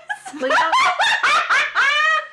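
Hearty laughter in a quick run of high-pitched bursts that climbs in pitch near the end.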